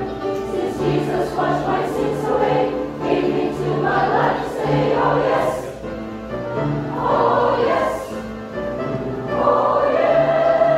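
Mixed choir of men and women singing a gospel song together, with held low notes beneath the melody.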